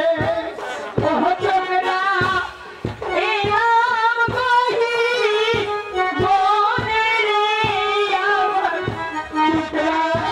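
A woman singing a Bengali jatra song into a microphone, amplified through the stage PA, with a steady drum beat and instrumental accompaniment.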